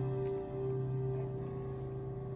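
A soft held chord from an acoustic guitar and keyboard ringing on and slowly fading between phrases of a worship song.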